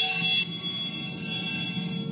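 Metal beam driven by an electrodynamic shaker at its fourth natural frequency, a steady tone of about 455 Hz with a faint distortion overtone from the amplifier. A pencil tip touching the vibrating beam chatters with a high buzz, loudest for the first half second and then weaker, as it is moved along to find the nodes.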